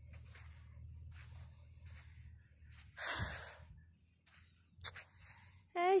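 A single audible exhale or sigh close to a phone microphone, about three seconds in, over a low rumble that fades out after about four seconds. A sharp click comes near the five-second mark.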